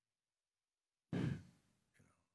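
A man's heavy sigh into a close headset microphone: silence for about a second, then a sudden breath out with a little voice in it that fades within half a second.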